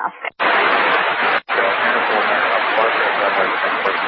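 Loud hiss of static on an air traffic control radio channel, broken by two short drop-outs, with faint garbled speech buried in it: a weak or noisy transmission.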